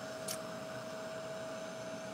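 Handheld embossing heat tool running: a steady fan whir and hiss with one constant hum tone through it, as it melts embossing powder on the page.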